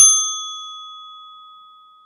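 A single bell ding sound effect, struck once and ringing out in a clear tone that fades away over about two seconds.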